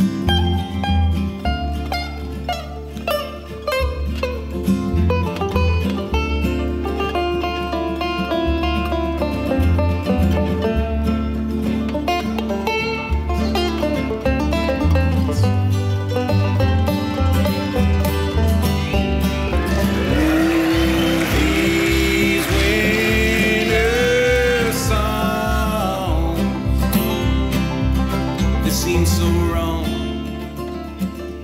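Bluegrass band playing an instrumental break: five-string banjo and acoustic guitar picking over a walking upright bass. A higher lead line with sliding notes comes through in the second half.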